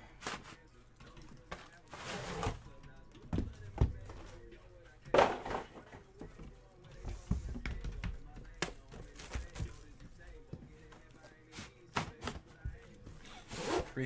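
Gold aluminium card briefcases being handled: a string of separate knocks and scrapes as the cases are lifted, turned and set against each other, with short rustles between. The loudest knock comes about five seconds in.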